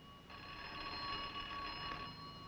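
Telephone bell ringing continuously with a steady, bell-like tone, coming back in about a third of a second in after a brief gap.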